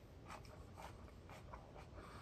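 Faint, crisp crunches of salad being chewed with the mouth close to the microphone, about five or six soft crunches at an uneven pace.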